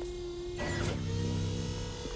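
Animated electric golf cart driving: a short swish about half a second in, then a steady electric motor hum.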